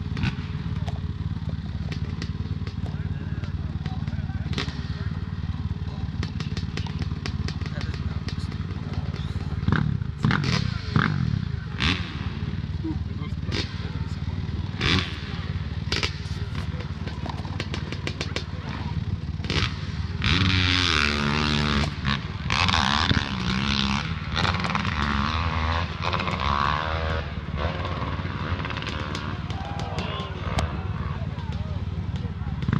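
Dirt bike engines running: a steady low idle throughout, revved up and down about a third of the way in and again about two-thirds of the way in, with indistinct talking among the crowd.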